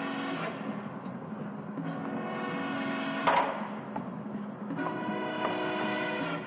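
Film score music: held orchestral notes with timpani, and a single crash of a cymbal or gong a little past three seconds in.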